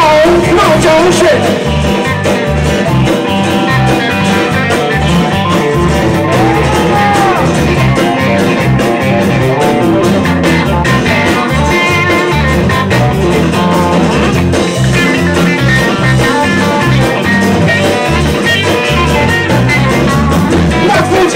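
Live blues-rock band playing a loud, full mix: acoustic and electric guitars over a steady drum beat, with a lead line bending in pitch.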